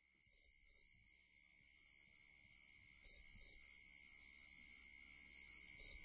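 Near silence: a faint steady hiss with a few soft paired blips, slowly rising in level.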